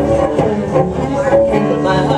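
Two cellos playing together, bowed, holding sustained notes in a song.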